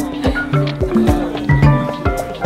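Background music with a steady beat and a low bass line.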